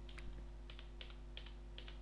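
Computer keyboard being typed: a faint, quick run of light key clicks, several a second, over a low steady hum.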